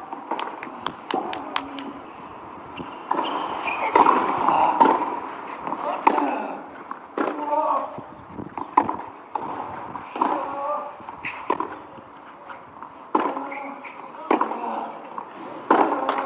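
Tennis ball struck by racquets on a clay court, a sharp pop roughly every second or so as a rally is played from about halfway in, with ball bounces and murmuring voices between shots.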